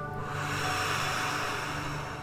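A long audible breath out, about a second and a half of soft blowing hiss, over soft background music with steady held tones.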